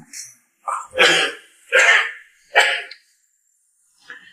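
An elderly man coughing hard, four short coughs in quick succession over about two seconds.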